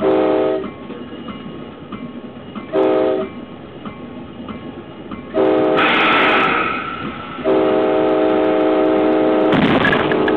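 Locomotive air horn sounding from the lead unit, heard inside the cab: two short blasts, then a longer one, then a long sustained blast as the train bears down on equipment fouling the track. About six seconds in, a loud rush of air cuts in over the horn, which is the emergency brake application.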